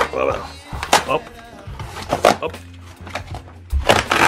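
Corrugated cardboard box being torn open by hand, in a few short sharp rips, over background music.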